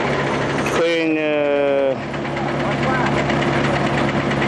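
Steady engine idling from road-paving machinery (asphalt paver or dump truck) at a worksite. Over it a man's voice holds a long hesitant vowel about a second in and makes a brief sound near 3 s.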